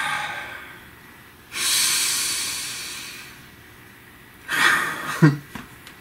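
A person taking deep breaths: a long breath lasting nearly two seconds, starting about a second and a half in, then a shorter, stronger breath near the end that ends in a brief voiced sigh.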